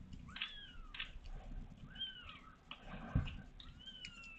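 Newborn kitten mewing: three high, thin cries, each under a second, falling slightly in pitch. A short thump about three seconds in.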